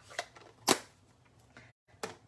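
Handling noise of hard plastic craft supplies: a light click, then a single sharp tap about two-thirds of a second in.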